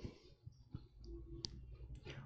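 A few faint, short clicks over quiet room tone, the sharpest about a second and a half in.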